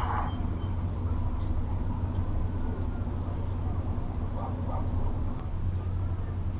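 Steady low rumble of outdoor background noise, with faint distant voices about four and a half seconds in.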